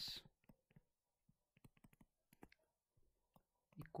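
Faint, irregular clicks and taps of a stylus on a tablet screen during handwriting.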